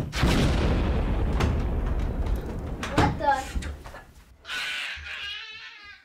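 Explosion sound effect: a sudden blast with a low rumble that fades away over about three seconds.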